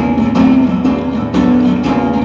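Live band music with no singing: a strummed acoustic guitar over drum hits.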